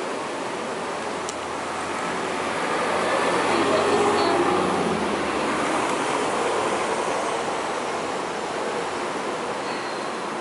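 A passing vehicle: a rush of noise that swells to a peak about four seconds in and then slowly fades.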